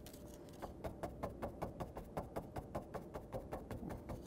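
Paintbrush tapping lightly on a painting surface, a quick run of faint taps about five or six a second that starts under a second in.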